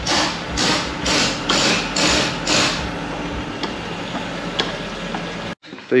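A hand-operated fluid pump being worked through a hose into the car's underside, about two strokes a second for the first three seconds, then slower mechanical ticking over a steady workshop background; the sound cuts off abruptly near the end.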